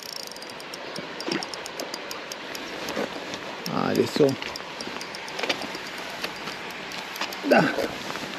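Light, irregular ticking of a spinning reel as a hooked pike is played in to the landing net, over a steady hiss.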